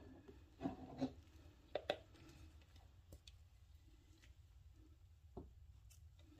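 Faint handling sounds: a few soft taps and light rubbing as gloved hands handle a plastic pouring jug over a soap mould, with very quiet stretches between.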